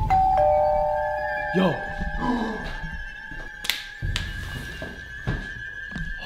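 Doorbell chime: a higher note, then a lower note held for about two seconds. It is followed by a thin, steady high tone and a few sharp thumps.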